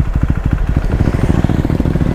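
KTM Duke 390's single-cylinder engine running under way, heard from the bike itself: a steady, rapid, even beat of firing pulses.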